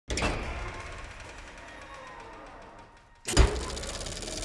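Cinematic trailer sound design: a sudden opening hit that fades slowly into a low drone, then a heavy, deep boom a little over three seconds in.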